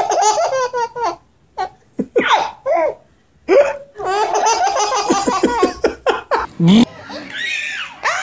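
A baby laughing hard. First come short bursts, then, from about four seconds in, a long run of rapid, catching belly laughs.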